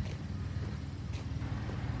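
Motor vehicle engine idling, a steady low hum.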